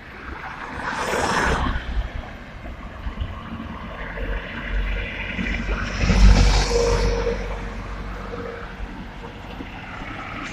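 Road traffic passing close by: the loudest event is a white van driving past about six seconds in, engine and tyre noise swelling and fading, over a steady low rumble. A shorter swell of noise comes about a second in.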